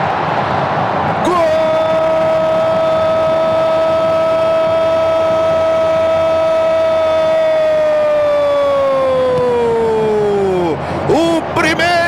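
A Brazilian football commentator's long goal cry, a single 'Gooool!' held on one pitch for about nine seconds and sliding down at the end, over stadium crowd noise that is heard alone for the first second or so. Rapid speech resumes near the end.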